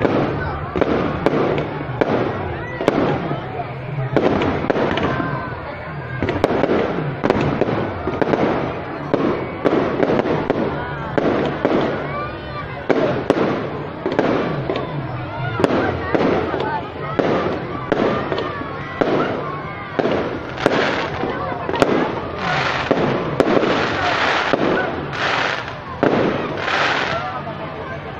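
Aerial fireworks going off overhead in a continuous run of bangs, about one or two a second, with people talking underneath. The bursts sound sharper and crisper in the last several seconds.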